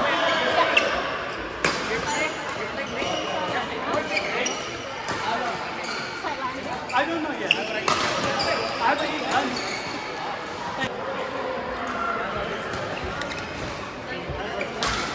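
Badminton rally: sharp cracks of rackets hitting the shuttlecock every second or two, with short high squeaks of court shoes on the mat, over a background of voices in a large hall.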